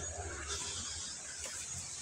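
Quiet outdoor background: a faint steady high-pitched insect hiss, with a low rumble in the first second from the phone being carried.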